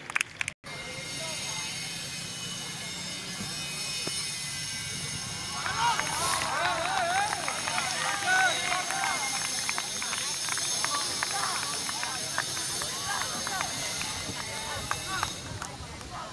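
Indistinct voices of several people chattering and calling out over a steady hiss. The voices swell up about a third of the way in and fade near the end. The sound drops out very briefly right at the start.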